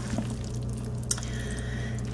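Faint squishing of mayonnaise-coated bow-tie pasta being mixed by hand in a glass bowl, over a steady low electrical hum.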